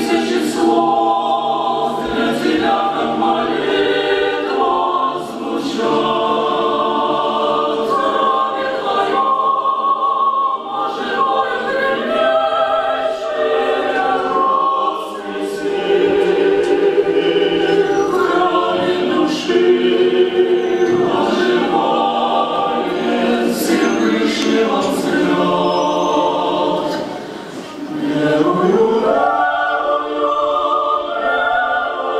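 Mixed choir of women's and men's voices singing, in long phrases with brief pauses between them.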